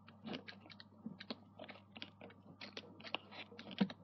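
Irregular light clicks and taps, several a second, from a stylus on a tablet screen as handwriting and graphs are drawn, over a faint steady hum.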